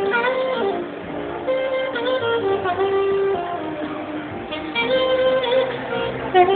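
Live smooth jazz instrumental: a saxophone plays a melody with sliding, bent notes over a keyboard accompaniment.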